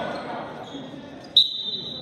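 A referee's whistle gives one short, sharp, steady blast about one and a half seconds in, the loudest sound here. Before it, a voice trails off over the murmur of the gym.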